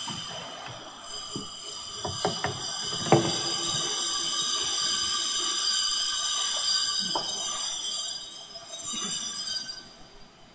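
High, sustained ringing of a bell, several steady tones held together, with a few sharp knocks about two to three seconds in and again near seven seconds. The ringing dies away just before the end.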